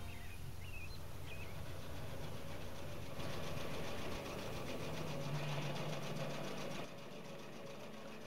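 Sewing machine stitching through a layered quilt in a fast, even rhythm over a low hum. It starts about three seconds in and stops about a second before the end.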